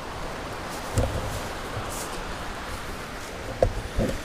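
Footsteps through grass and rustling as the tent is entered, with a dull thump about a second in and a short sharp knock near the end, over a steady background hiss.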